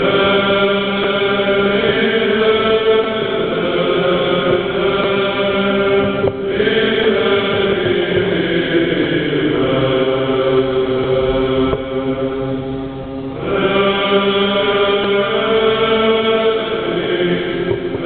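Choir singing an Orthodox hymn a cappella in held, chant-like chords. About six seconds in there is a short break. The sound then thins to a quieter, falling line, and the full choir comes back about thirteen and a half seconds in.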